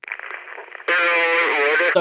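A voice from the race footage's own sound, thin and band-limited as if over a public-address system or a phone recording. It rises loud a little under halfway in, over a quieter thin background.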